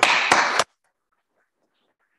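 Hands clapping in applause for about half a second, then cut off abruptly, leaving near silence.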